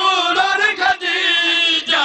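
A man's voice chanting a sung religious recitation (a zakir's majlis recitation) over a microphone, in long wavering held notes with short breaks about a second in and near the end.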